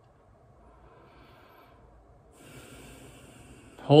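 A man drawing in a breath, a soft noisy intake starting a little past halfway and lasting about a second and a half, before he speaks again. Faint room hiss before it.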